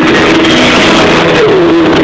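Live concert music recorded from the crowd, loud and overloaded: a sustained melodic line over a dense accompaniment, gliding down in pitch about a second and a half in.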